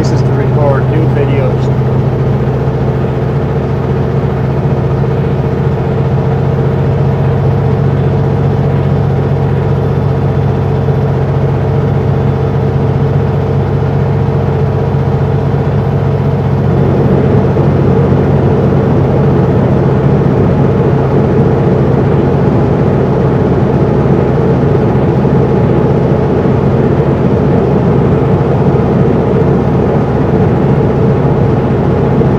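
Kenworth W900L semi truck's diesel engine running steadily at highway speed, with tyre and wind noise; the sound grows a little louder and rougher about halfway through.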